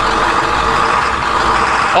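Thomas school bus engine running steadily as the bus pulls away.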